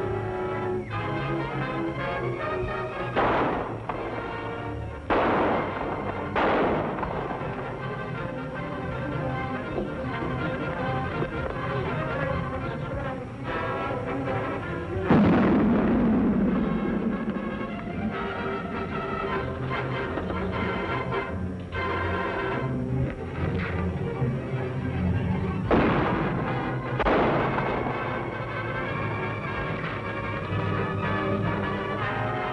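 A dynamite blast about halfway through, the loudest sound, with a long low rumbling tail, and several sharp gunshots, three in the first seven seconds and two near the end, all over dramatic orchestral music.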